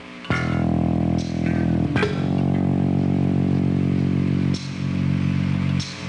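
Rock music: guitar and bass chords struck and left to ring, a new chord coming in every couple of seconds.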